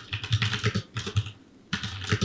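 Typing on a computer keyboard: a quick run of keystrokes, a short pause a little past the middle, then more keystrokes.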